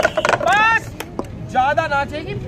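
A voice calling out in two drawn-out, pitch-bending calls, with two sharp taps between them about a second in.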